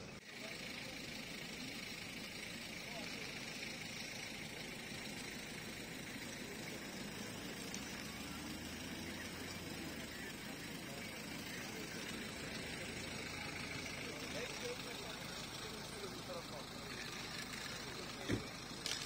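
A vehicle engine running steadily in the background, with faint, indistinct voices and general outdoor noise.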